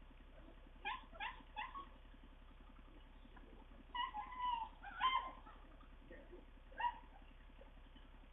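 A dog giving short, high yelps: four quick ones about a second in, a longer drawn-out whining call around four seconds, then single yelps near five and seven seconds.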